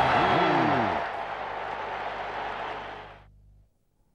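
Closing sound effect of a TV programme's title sequence: a loud noisy whoosh with sweeping pitch in the first second, then a hiss that holds and fades out about three seconds in.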